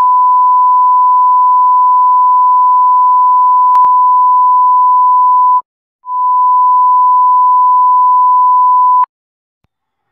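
Samsung phone's receiver (earpiece) test from the *#0*# service menu, playing a steady pure test tone. The tone runs for about five and a half seconds, breaks off briefly, then sounds again for about three seconds and stops. A faint click comes about four seconds in.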